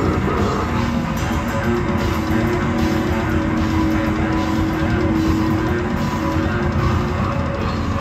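Death-grindcore band playing live: loud distorted guitars and drums, no vocals, with one long held note through the middle.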